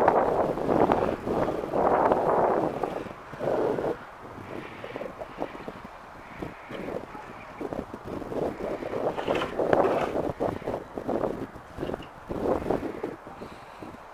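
Wind buffeting the microphone in loud gusts for the first few seconds, then quieter irregular crunching of footsteps on packed snow.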